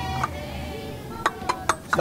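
Kitchen utensils clinking against dishes on a cooking table: four quick, sharp clinks in the second half.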